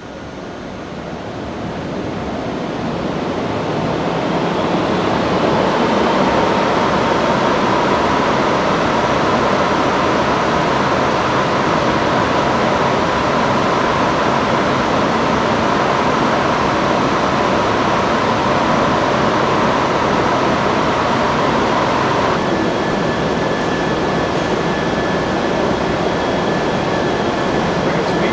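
Full-scale automotive wind tunnel running: a rush of airflow and fan noise that builds over the first few seconds and then holds steady at test speed, with a faint hum riding on it that steps up in pitch near the end.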